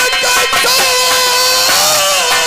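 A male nautanki singer holds one long high note at the microphone, wavering slightly and bending up near the end, over the troupe's accompanying music.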